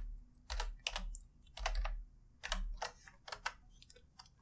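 Computer keyboard being typed on: a dozen or so separate key clicks in short, uneven runs as a word is entered.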